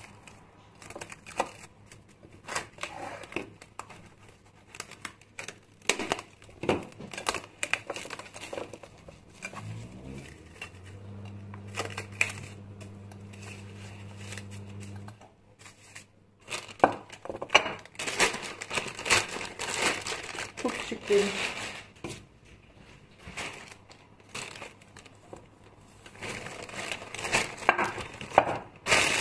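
Plastic cling film and a plastic shopping bag crinkling and rustling as food bowls are wrapped and packed, with light clicks and knocks of handling. About ten seconds in, a low hum starts with a short rise in pitch and holds steady for about five seconds.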